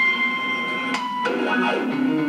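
Electronic keyboard music: a held high note for about a second, then a change to lower sustained notes.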